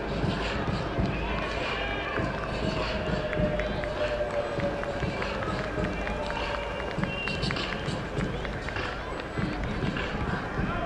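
Open-air ground ambience: distant, indistinct voices over a steady low rumble, with scattered faint clicks.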